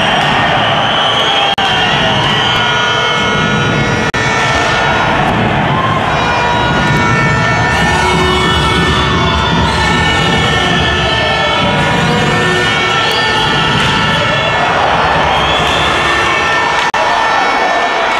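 Loud ice hockey arena crowd noise, with siren-like wails that glide up and then down in pitch several times over the din.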